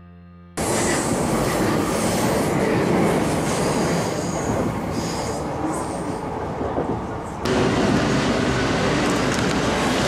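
Commuter train running, heard from inside the carriage: a steady rumble and rattle of the wheels on the track. About seven seconds in it cuts abruptly to a different loud, steady noise.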